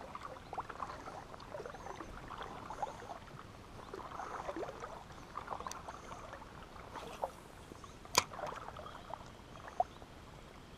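Soft, irregular splashing and gurgling of water close by. A single sharp click comes about 8 seconds in, and a smaller one near the end.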